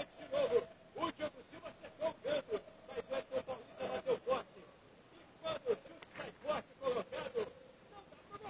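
Voice talking quietly in short bursts of syllables with brief pauses, too faint for words to be made out.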